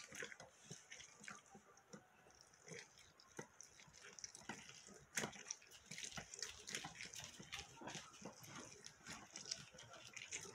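Faint, irregular wet squelching and squishing as orange halves are pressed and twisted on a stainless steel hand juicer's ridged reamer, juice spurting through the perforated strainer. The squeezing is sparse for a few seconds, then comes in quicker bursts from about halfway.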